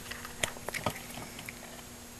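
A few light plastic clicks and taps in the first second as a wiring connector is handled and plugged into an aftermarket remote kit module, over a faint steady hum.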